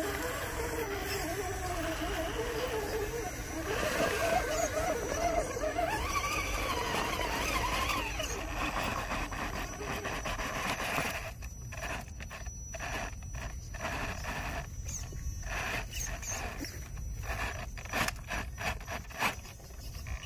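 Small electric motor and gearbox of a radio-controlled rock crawler whining, the pitch rising and falling with the throttle as it climbs over rock. Later come irregular clicks and scrapes of tyres and chassis on the stone.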